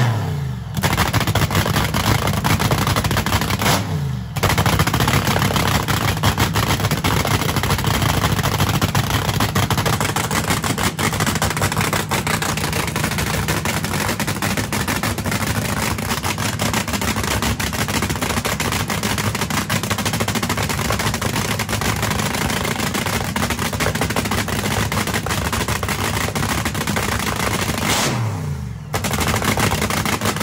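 Nitromethane-burning supercharged Hemi dragster engine running as a cackle car: a loud, rapid crackle like machine-gun fire. The revs briefly fall away and pick up again about four seconds in and near the end.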